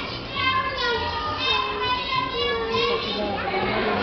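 A high-pitched voice calling out on stage in long, wavering drawn-out phrases, with other voices under it, echoing in a large hall.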